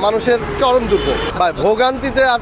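A man speaking in a street interview, with road traffic rumbling behind.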